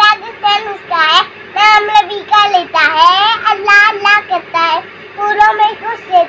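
A young girl singing an Urdu children's poem about the bulbul in a high, sing-song voice, with no accompaniment, in short phrases separated by brief pauses.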